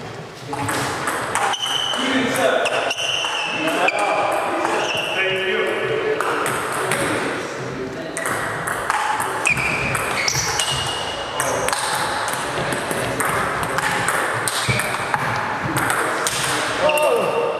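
Table tennis rally: the ball clicking off the bats and the table, hit after hit at an uneven pace, with voices talking alongside.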